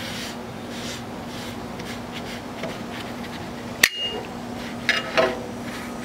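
Paper towel held in metal tongs wiping seasoning oil across a rolled-steel griddle top, a soft continuous rubbing over a steady low hum. About four seconds in the metal tongs strike the griddle with one sharp clink that rings briefly.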